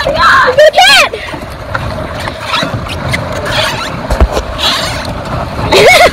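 Excited, high-pitched shouting or yelling in the first second and again near the end. Between the shouts is a steady rushing noise.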